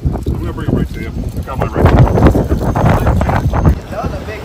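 Wind buffeting a phone microphone, with heavy low rumbling and handling knocks, under indistinct voices of people talking.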